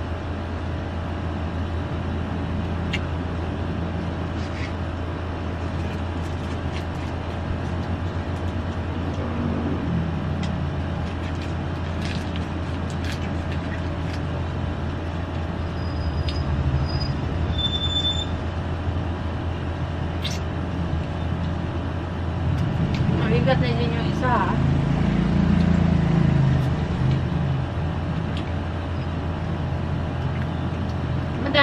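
A person eating fried chicken wings by hand, chewing with a few sharp clicks, over a steady low hum that runs throughout.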